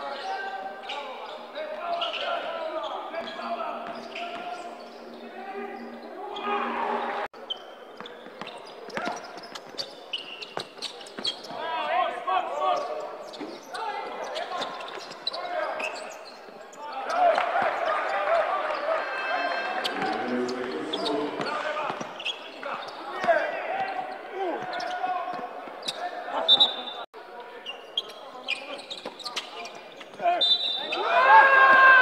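Basketball game sound in a large gym hall: the ball bouncing on the hardwood court in short sharp knocks, under a voice talking almost throughout. The sound breaks off abruptly twice, at about 7 seconds and near the end, where one clip is cut to the next.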